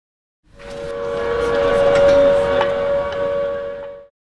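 A sustained, steady whistle-like tone over a rushing hiss. It swells in about half a second in and stops abruptly at the end.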